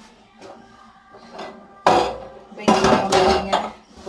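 Metal clattering from a stainless steel gas stove being handled: a sudden clank about two seconds in, then a longer rattling clatter about a second later, both with a metallic ring.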